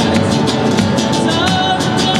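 Live Argentine folk dance music played by a small band: acoustic guitar and a bombo drum keeping a steady beat, with a wavering melody line coming in about midway.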